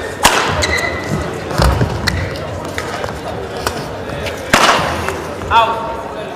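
Sports hall ambience between badminton points: a few sharp knocks that ring briefly in the hall, a duller thud, and a short squeak near the end, over a background murmur of voices.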